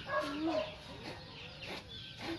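A chicken clucking: one short call near the start and a fainter one about a second in.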